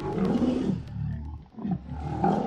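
A deep, growling animal roar sound effect: one long roar, then a second roar beginning about a second and a half in.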